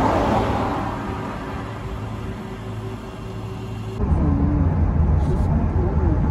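A city bus arriving at the stop: a loud wash of engine and road noise that is strongest at first and eases off over about four seconds. After that comes a steady low rumble from inside a moving vehicle.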